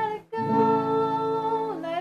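A female voice sings one long held note over a strummed acoustic guitar, the note sliding down near the end. The sound cuts out briefly about a quarter-second in.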